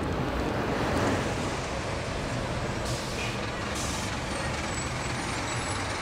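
City street traffic with a heavy vehicle's engine running steadily. Two short hisses come about three and four seconds in.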